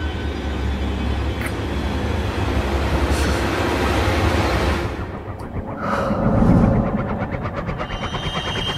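Dramatic background score: a low rumbling drone under a dense wash of sound, which dips about five seconds in and then swells again.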